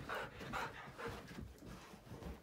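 Husky-type dogs at play, making a string of short, noisy dog sounds, a few bursts a second.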